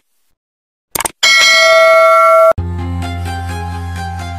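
A short click, then a loud bell chime that rings steadily for over a second and cuts off abruptly: subscribe-button sound effects. Background music with strings and a steady bass then begins.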